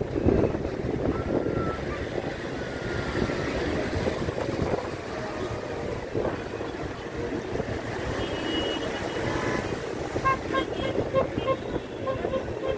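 Steady outdoor waterfront noise: wind on the microphone and the rumble of distant road traffic, with small waves at the shore. Near the end come faint short beeps, about three or four a second.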